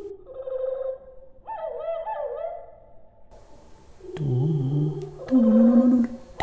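Recorded birdsong played back at greatly reduced speed, so its very fast song is stretched into low, drawn-out whistling tones. A held tone gives way to notes that swoop down and back up, and lower tones follow near the end.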